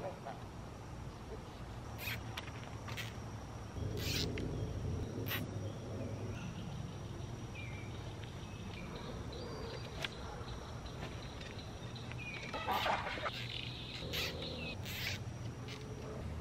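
Scattered sharp clicks and rustles from handling wooden sticks and plastic zip ties while fastening trellis cross members, a few seconds apart and irregular. A faint steady high tone runs underneath.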